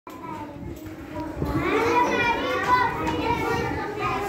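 Young children's voices talking and calling out, quiet at first and louder from about a second and a half in.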